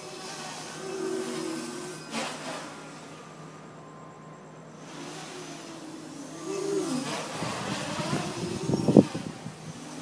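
Quadcopter's brushless motors and propellers whining in flight, the pitch rising and falling as the throttle changes during acrobatic moves. Near the end a burst of rough rumbling comes on the microphone and peaks sharply about nine seconds in.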